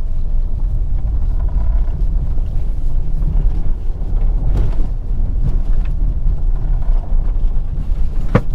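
Steady low rumble inside a Skoda Kodiaq SUV's cabin as it drives over a rough dirt track: tyre and suspension noise over the engine.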